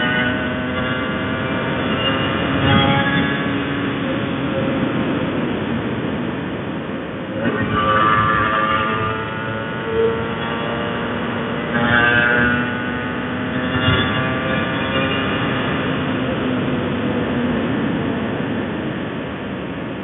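Honda NSR150RR's two-stroke single-cylinder engine running under way. The revs climb and drop several times, about a third of the way in, past halfway and again a little later, between steadier cruising.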